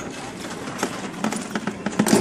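Summer toboggan sled running down a metal trough track: a steady running noise with irregular clacks and knocks as it rides the trough.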